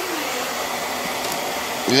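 Steady blowing noise of a running air appliance, with a voice starting right at the end.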